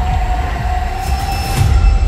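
Cinematic intro sound design: a heavy, steady low rumble with a held high tone above it, and a few sharp hits near the end.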